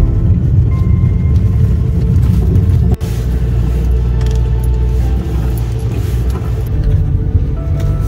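Loud low rumble of a vehicle driving over a rough dirt track, heard from inside the cab, with a brief break about three seconds in. Music plays faintly underneath.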